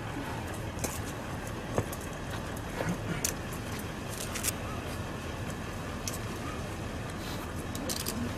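Steady outdoor street background of distant traffic, with a few short clicks and rustles scattered through.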